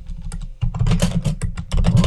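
Typing on a computer keyboard: a quick run of key clicks, with a short lull about half a second in before the keystrokes pick up again.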